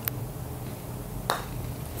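A putter face striking a golf ball: a single crisp click past the middle, with a fainter tick at the very start over a low steady hum.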